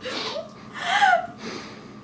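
A woman's mock sobbing: two breathy, whimpering gasps, the second louder, about a second in.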